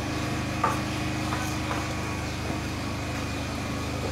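A steady machine hum with a few light clicks and knocks, the sharpest about two-thirds of a second in, as bulb parts are handled on a workbench.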